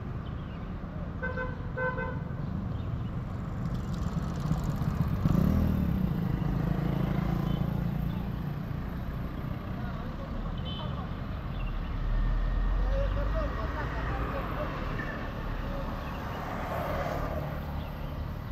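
Motor scooter riding along a town street: its small engine and the road and wind noise run steadily, swelling for a couple of seconds about a third of the way in. A vehicle horn toots twice in quick short beeps about a second in.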